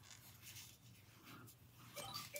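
Near silence, with a couple of faint, brief rustles of a cloth bow tie's band being handled as its adjuster is unhooked.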